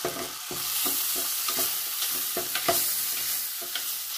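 Sliced onions sizzling in oil in an aluminium pan, stirred with a plastic slotted spatula that scrapes and taps against the pan about two or three times a second. The sizzle grows louder about half a second in.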